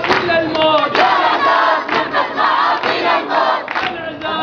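A crowd of men and boys chanting together at a street protest, with rhythmic hand clapping.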